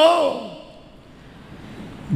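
A man's voice through a microphone in a pause between phrases: his last word fades out with hall reverberation, then a faint breath that grows slightly louder near the end.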